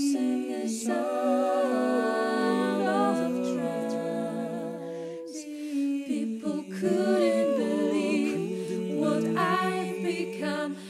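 An a cappella vocal ensemble singing wordless sustained chords in close harmony, the voices shifting together from chord to chord.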